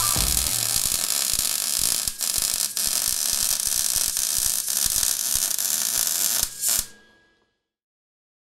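MIG welding arc from a Lincoln Electric Easy MIG 140 welder, a steady crackling hiss as the wire feeds into the weld pool; it stops abruptly about seven seconds in.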